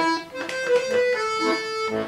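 Bayan (Russian chromatic button accordion) playing a melody over sustained chords, the reedy notes changing every fraction of a second, with a brief dip in loudness just after the start.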